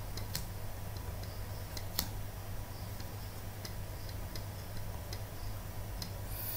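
Faint, irregularly spaced light clicks of a stylus tapping and writing on a pen tablet, one a little louder about two seconds in, over a steady low electrical hum.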